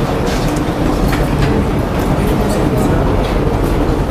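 Noisy classroom background: a steady low rumble of room noise with an indistinct murmur of voices and scattered small clicks and knocks.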